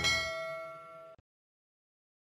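A bell-like ding sound effect ringing and fading, cut off abruptly just over a second in.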